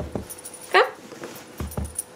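Small dog whimpering to be let up onto the sofa, with one sharp high yelp that falls steeply in pitch about three quarters of a second in. Two soft low thumps follow near the end.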